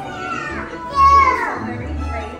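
Young children's voices over soft background music, with one child's high voice calling out loudly about a second in.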